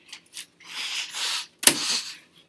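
Handling noise from a small white object held in the hands: a rustle, then a single sharp snap about a second and a half in.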